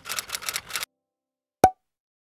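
Animated-outro sound effects: a quick run of short clicks, like typing, as text appears, stopping just under a second in, then a single sharp pop about 1.6 s in.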